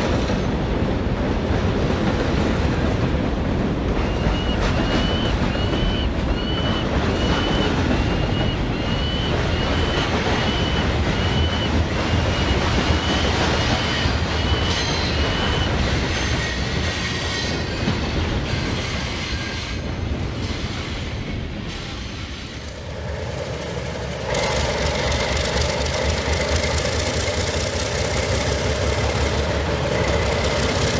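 HO-scale model log train rolling by, with a squeak that repeats about one and a half times a second for around twelve seconds. Near the end it gives way to the steady idle of a diesel switcher's engine.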